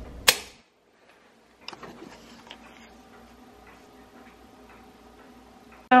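A single sharp clink on a ceramic tea mug just after the start, followed by faint, scattered light ticks and clicks over a low room hum.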